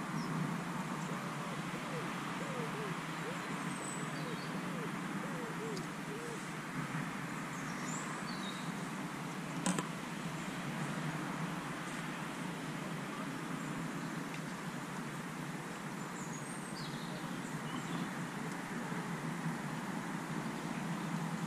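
Steady outdoor background noise with faint, scattered bird chirps and one sharp click about ten seconds in.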